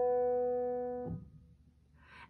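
Piano note held at the end of a left-hand broken E major chord (E, G-sharp, B), ringing and slowly fading, then cut off when the key is released about a second in, with a soft thump as it is damped.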